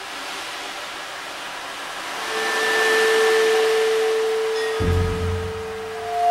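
Soft percussion-ensemble texture: a hushed wash of noise that swells up and fades, with a single held pitched tone entering about two seconds in and a low stroke near the end.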